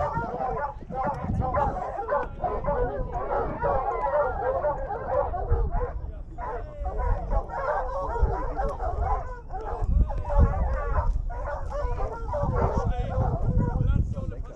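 A pack of hounds whining and yelping together, many overlapping wavering cries that carry on without a break.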